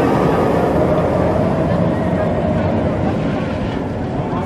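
Intimidator's B&M hyper coaster train running past on the steel track close by: a loud rush of train and wheel noise that fades gradually as the train moves away.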